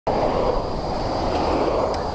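Steady rush of road traffic passing on the adjacent road, mixed with wind noise on a helmet-mounted camera microphone while riding a bicycle.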